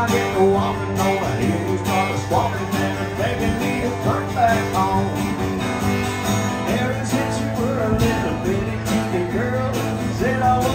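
Live country music: an acoustic guitar strummed steadily, with a man's voice at the microphone.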